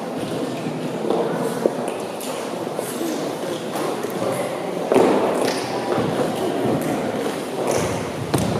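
Many dancers' shoes stepping, tapping and scuffing on a wooden dance floor, with a murmur of overlapping voices, in a large hall; one louder swell about five seconds in.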